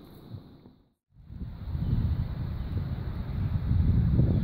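Wind buffeting the microphone outdoors: an irregular low rumble that starts abruptly after a moment of silence about a second in and grows louder.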